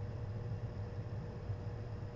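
Steady low background hum with a faint constant tone over light hiss, with no distinct event: room tone in a pause between words.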